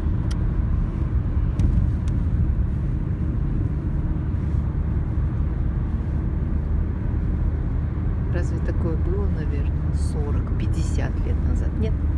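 Road and engine noise inside a moving car's cabin: a steady low rumble while driving.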